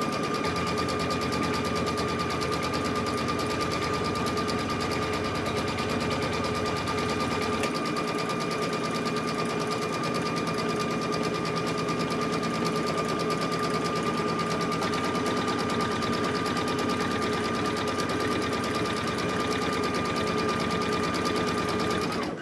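Brother BP3600 embroidery machine sewing steadily at a fast, even stitch rate over a steady motor whine. It is running the tack-down line that fixes the patchwork fabric to the stabiliser in the hoop.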